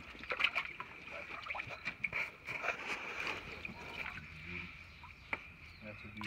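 Muddy pool water sloshing and splashing lightly as a large quartz crystal is rinsed in it by hand, in small irregular splashes and trickles.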